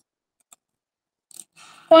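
Near silence with a single faint click about half a second in, then a brief soft rustle and a voice starting to speak right at the end.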